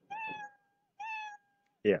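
Scratch's built-in "Meow" sound effect, a recorded house-cat meow, played twice one after another about a second apart: the second meow starts only once the first has finished, because the first is a "play sound until done" block.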